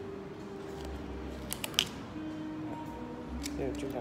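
Hinged flip-top cap of a Carolina Herrera CH Men Privé perfume bottle snapping open with a few sharp clicks about two seconds in, like flipping open a lighter lid, over soft background music.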